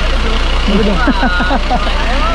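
Fire engine idling: a steady low engine drone, with voices over it.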